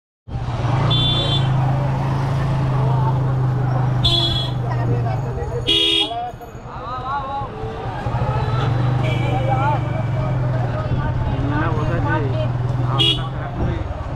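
Motorcycle engine running at low speed, with short horn beeps about a second in, around four and six seconds, and again near the end. People's voices can be heard in the street around it.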